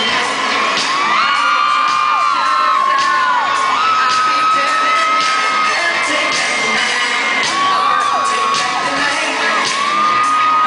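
Live pop music played loud over an arena sound system, with the crowd cheering and whooping close by. High held cries with falling ends come and go throughout.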